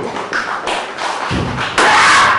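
A run of thuds from a taekwondo board-breaking demonstration: kicks striking held boards and feet landing on the padded mat, several in two seconds, with the loudest and sharpest near the end.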